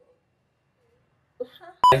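Near silence, then faint voice sounds and a single very short, high electronic beep tone right at the end.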